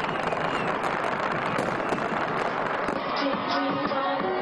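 Fireworks exploding and crackling, a dense run of many sharp cracks. About three seconds in it cuts off and music begins.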